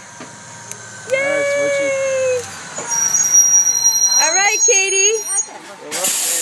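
Blue Bird school bus pulling up and stopping: a high-pitched brake squeal from about three seconds in, then a burst of air-brake hiss right at the end as it halts.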